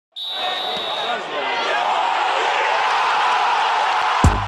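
Several people's voices over a steady noisy background, with a high steady tone for about the first second.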